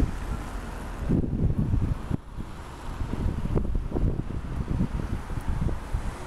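Wind buffeting the microphone in irregular gusts, over the steady hum of street traffic below.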